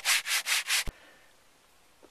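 Hand sanding with a sanding block over hardened epoxy filler and cured resin on a fiberglass pontoon hull: quick back-and-forth strokes, about four a second, stopping about a second in with a short click.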